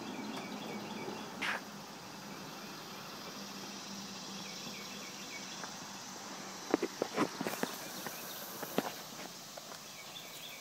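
Footsteps on a concrete riverbank: a single step about a second and a half in, then a quick run of sharp steps and scuffs around seven seconds in, over a steady outdoor background with faint chirping.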